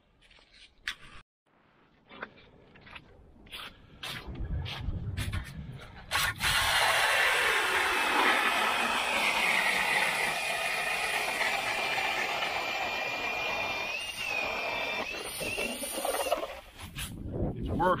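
Cordless drill spinning a hand ice auger through ice on a homemade adapter. The motor whine mixes with the grinding of the blades cutting ice. It starts about six seconds in, dips slightly in pitch as the auger bites, holds steady for about ten seconds and stops abruptly near the end. Before it there are a few scattered clicks and knocks of handling.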